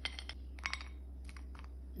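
A few faint, sharp clicks of pieces of dark chocolate dropping into a ceramic bowl, in three small clusters, over a low steady hum.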